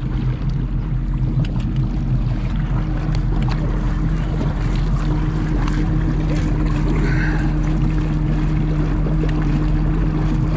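Boat engine running steadily, a low even hum with a deep rumble beneath, over water sloshing against the hull, with a few small clicks.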